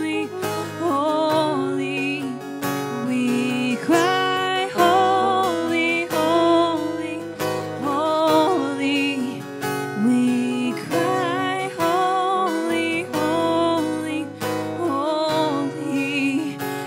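Live contemporary worship music: an acoustic guitar strummed under a melody line that wavers with vibrato.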